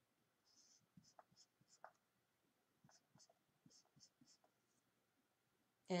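Marker writing on paper: faint, short scratching strokes in two runs, a pause between them, as letters are written out.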